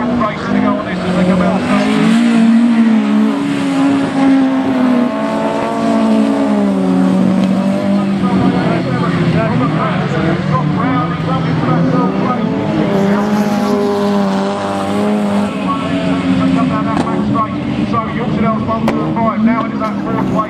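Autograss race car engines running hard, the notes rising and falling as the cars lift for the corners and accelerate again, with several engines heard at once.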